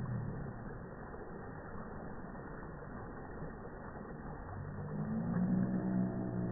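Slowed-down audio of a slow-motion video: a low, muffled rumble with a deep, drawn-out droning tone that fades near the start and swells again from about four and a half seconds in.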